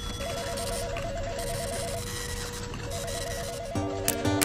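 An electronic warbling trill, rapidly alternating between two pitches, sounds in two bursts of about a second each over a steady hum and hiss. Near the end, music with plucked guitar notes begins.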